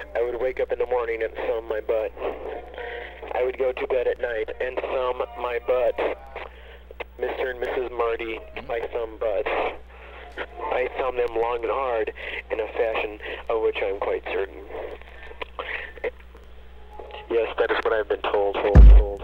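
A voice talking, thin and cut off at the top like a radio or telephone recording, over a steady low hum.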